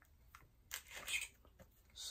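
Faint scratching and tearing of a cardboard comic-book mailer being cut open with a small hand tool, a few short scratches around the middle.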